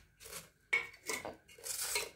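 Stainless steel plates and bowls clinking and scraping as puris are handled and served: a few short clatters, the sharpest just under a second in.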